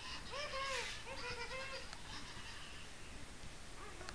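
High-pitched vocal squeals: several short calls that rise and fall in pitch, bunched in the first two seconds, then fading to faint room noise.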